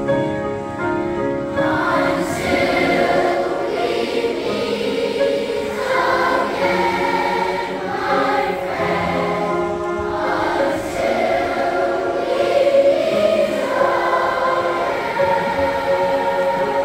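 A large massed choir of school children singing together, with the full choir sound building about a second and a half in.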